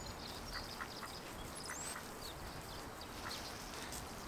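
Mallard ducks quacking faintly: a few short, spaced-out calls over a steady outdoor hiss, with a brief high chirp a little under two seconds in.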